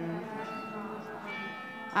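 Bells ringing: several overlapping tones that hold and fade slowly, with fresh strikes coming in about two thirds of the way through.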